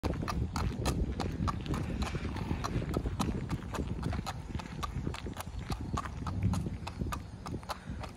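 Hoofbeats of a Thoroughbred mare walking on asphalt: a steady four-beat clip-clop, about four hoof strikes a second.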